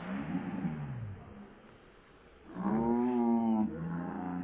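Drawn-out wordless vocal calls. One falls in pitch near the start, a louder held, slightly wavering call comes past the middle, and another falling call begins near the end.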